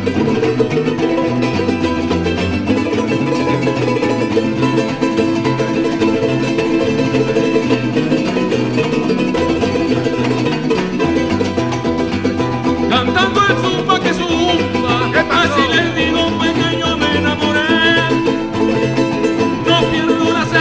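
An acoustic South American folk trio of charango, cuatro and classical guitar playing together live, strummed and plucked strings over a steady repeating bass pattern. About two-thirds of the way through a man's voice comes in singing.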